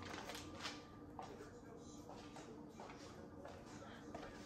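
Quiet kitchen room tone: a faint steady hum with a few soft taps in the first second or so.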